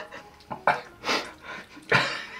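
A person taking three short, sharp breaths through the mouth, the huffing of someone whose mouth is burning from ghost-pepper chili nuts.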